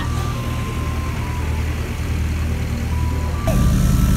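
Single-engine propeller airplane taxiing on the apron, a steady low engine drone that gets louder about three and a half seconds in.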